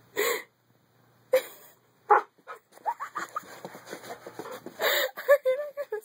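A puppy making short breathy vocal sounds as it spins after and bites at its own tail, ending in a few short, pitched whimpers.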